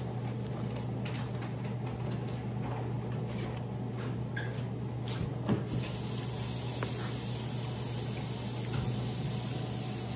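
Steady low electrical hum with faint hiss, under a few soft clicks and mouth sounds of eating, as a forkful of scrambled eggs is taken and chewed; the clearest click comes about five and a half seconds in.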